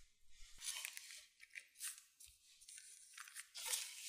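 Baking paper rustling and crinkling under hands as cheese slices are pressed onto a flattened potato sheet and a second layer is laid over them. It comes in several irregular rustles, the loudest just under a second in, near two seconds and near the end.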